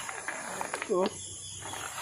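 A man's voice says one short word a little under a second in. Otherwise there is only a faint steady background.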